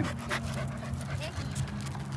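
A corgi panting in short, quick breaths.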